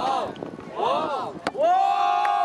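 Short rising-and-falling vocal shouts, repeated about twice a second, with a sharp knock about one and a half seconds in. Music with a long held note starts near the end.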